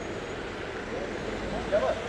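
Indistinct voices over a steady road-traffic rumble, with one voice briefly louder near the end.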